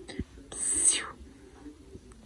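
A woman's whispered, breathy hiss, once, about half a second long, coming about half a second in, as she coaxes a sleeping newborn awake.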